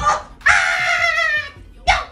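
A sharp thump, then a long high-pitched cry that falls in pitch, then a second thump with a short yelp near the end: a falsetto puppet voice crying out as the puppet is struck.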